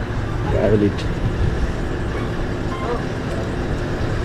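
Steady low rumble of vehicles running nearby, with faint voices now and then and a single click about a second in.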